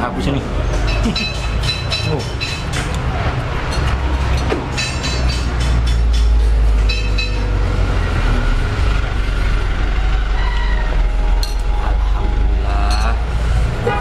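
Low engine rumble of road traffic, a heavy vehicle passing close by. It swells about four seconds in and is loudest around the middle.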